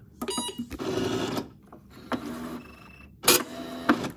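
ITBOX i52N Lite electronic punch card time recorder taking in a time card and printing the time on it: a quick run of mechanical clicks and motor whirring in the first second and a half, then a sharp click near the end.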